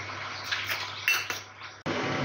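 Steel ladle clinking a few times against a stainless steel pot of boiling rice, over a steady hiss. Near the end the sound cuts suddenly to a louder steady background noise.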